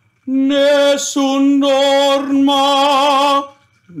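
A man singing a few sustained operatic notes with vibrato, in three held phrases at much the same pitch, breaking off into a laugh near the end.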